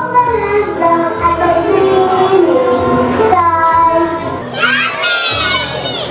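A child singing a song over backing music, holding notes and gliding between them. Near the end a higher voice line wavers up and down.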